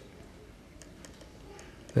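A few faint clicks of computer keys being pressed over quiet room tone.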